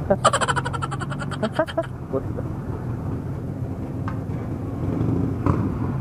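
Steady low machine hum while a motorcycle is being refuelled at a fuel pump. For the first two seconds a loud, rapidly pulsing sound, about a dozen pulses a second, rides over it.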